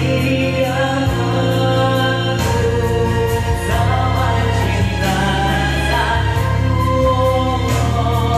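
Karaoke: a man singing a Malay pop ballad into a microphone over a loud backing track.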